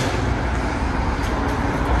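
Steady low rumble of parking-garage background noise, like distant traffic, with a sharp click at the very start and a few faint ticks.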